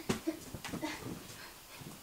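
A person whimpering in short, broken sounds, mixed with rustling and light knocks as cloth is pulled out of a closet.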